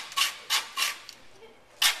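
A run of short rasping scrapes, four quick strokes in the first second and another near the end: hose being worked through the metal fitting at the top of a telescopic water-fed window-cleaning pole.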